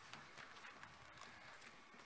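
Near silence: faint open-air background hiss with a few light taps and rustles.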